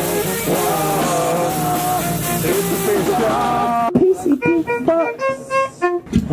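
Live ska-punk band playing with trombone and electric guitar. About four seconds in, the band stops abruptly, leaving a few short, separate guitar notes.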